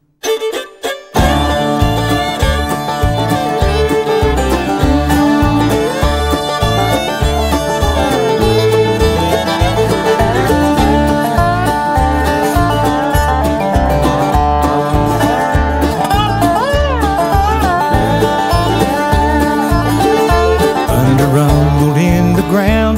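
Bluegrass band playing an instrumental passage: banjo, fiddle, guitar and bass over a steady driving beat. After a brief pause and a few scattered opening notes, the full band comes in about a second in.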